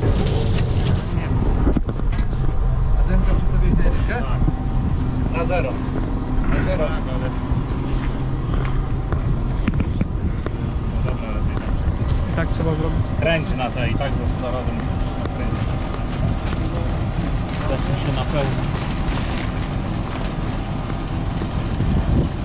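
Tractor engine idling steadily, with voices faintly in the background.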